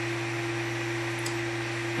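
Steady electrical hum with two constant low tones over a faint even hiss, the recording's background noise with no other event.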